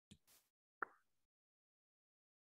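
Near silence, broken by one short pop a little under a second in.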